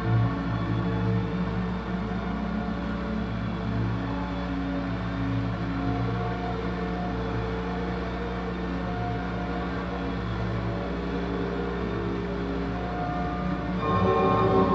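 Live electronic music played on a tabletop mixer and electronics through a PA speaker: layered low tones held steady without a beat, with higher tones coming in near the end.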